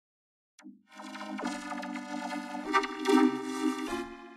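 A spoken line vocoded onto 8-bit-style synthesizer chords, so the voice comes out as sustained pitched synth tones. It starts about half a second in and changes chord twice.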